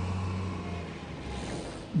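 Low, steady rumble of an engine, fading out about a second and a half in.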